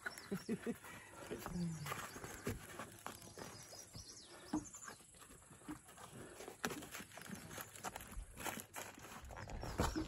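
Scattered light knocks and taps from gear being handled in a boat, with a few brief low murmured voices early on.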